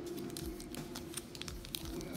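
Foil trading-card pack wrapper crinkling as it is handled and torn open: a run of small, irregular crackles.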